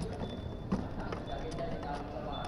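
Handling noise of a motorcycle helmet and the plastic under-seat storage compartment: scattered light knocks and clicks over a low rumble.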